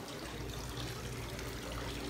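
Small decorative fountain, water trickling steadily from its spouts into a stone basin.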